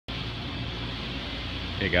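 Steady hum of an air conditioner running in a closed shop, with a low, even drone. A man's voice begins right at the end.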